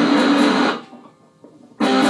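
Electric guitars played through a small amplifier: a loud chord sounds for about three-quarters of a second and cuts off, and the playing comes back in just before the end.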